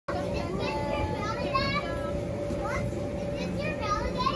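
Young children calling out and squealing in high-pitched voices as they play and jump in an inflatable bounce house, over a steady hum.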